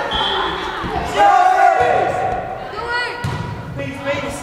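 Voices calling and shouting in an echoing school gymnasium, loudest about a second in, with a ball bouncing on the hardwood floor.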